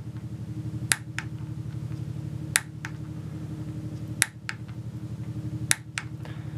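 Click-type torque wrench set at 100 inch-pounds clicking four times, about every second and a half, with fainter ticks between, as it is pulled again and again on a quarter-inch hex shaft that has begun to turn in its wooden dowel. A steady low hum runs underneath.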